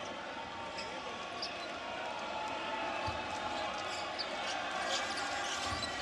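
Basketball dribbled on a hardwood arena court, a few separate bounces heard over the steady murmur of the crowd in a large hall.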